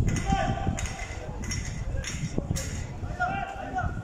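Voices calling out across an outdoor football pitch: short shouts near the start and again after about three seconds, over a steady low rumble, with a few brief sharp sounds in between.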